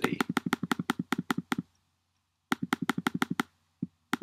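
Computer mouse button clicked rapidly, about eight clicks a second, stepping an on-screen control: a run of about a dozen clicks, a pause of about a second, then another run and a few more near the end.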